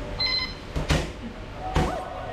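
Two sharp strikes landing on kickboxing pads held by a trainer, about a second in and again near the end.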